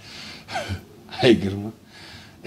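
A man's breathy gasp, then two short vocal exclamations that fall in pitch, the second louder.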